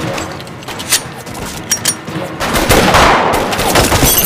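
Gunfire from rifles and pistols in a shootout: a few separate shots at first, then a dense, rapid volley through the second half.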